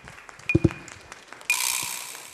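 Audience applauding, with the clapping swelling suddenly about one and a half seconds in. A short high ping sounds about once a second.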